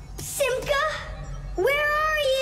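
Two wailing, meow-like cries over a low hum: a short wavering one, then a longer one that rises sharply at its start and sinks slowly.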